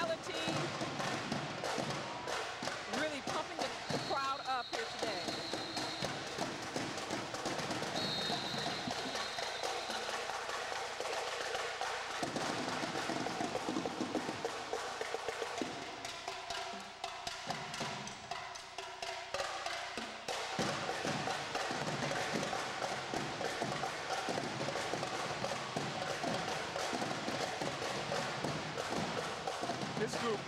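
Marching drum line of snare drums, tenor quads and bass drums playing a fast, steady drill-team cadence. Two short high steady tones sound about 4 and 8 seconds in.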